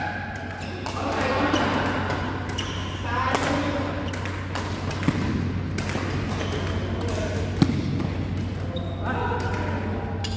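Voices talking and calling in a badminton hall, with two sharp racket strikes on the shuttlecock about five and seven and a half seconds in, over a steady low hum.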